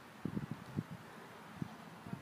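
Wind buffeting the microphone: irregular low rumbling gusts over a faint hiss.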